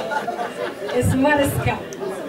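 A woman speaking animatedly into a handheld microphone, with chatter from the audience around her.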